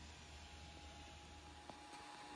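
Near silence: faint room tone with a low steady hum and a faint thin steady tone, and one small click near the end.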